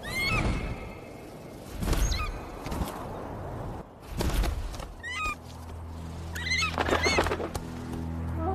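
Four short, high animal cries, each falling in steps, over swells of rushing noise; low sustained music notes come in about halfway through.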